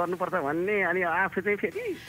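Speech only: a person talking, the voice thin, with its higher tones cut off.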